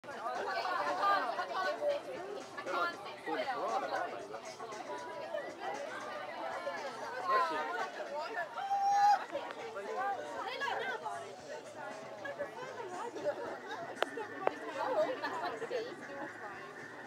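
Chatter of several people talking over one another, none clearly in front, with a single sharp click near the end.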